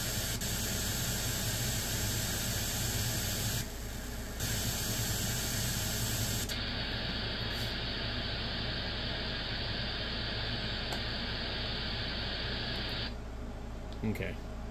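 Wide-FM receiver static from an SDRplay software-defined radio tuned to the 2-metre APRS frequency with no signal present: a steady open-squelch hiss. About halfway through, the top of the hiss cuts off as the bandwidth narrows, and near the end the hiss drops away as the radio is retuned to the 12-metre band.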